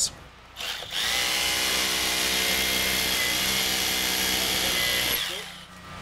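Hammer drill with a long masonry bit boring into a brick wall's mortar joint. The drill comes up to speed about a second in, runs steadily for about four seconds, then winds down near the end.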